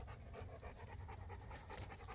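A Cane Corso panting faintly.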